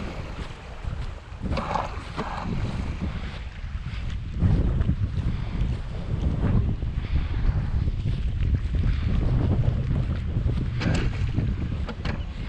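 Wind buffeting the microphone, heavier from about four seconds in, over the water noise of an electric RC boat moving slowly through the water near the bank.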